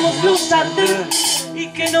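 A live band playing, with drums and repeated cymbal hits under pitched instruments and a voice.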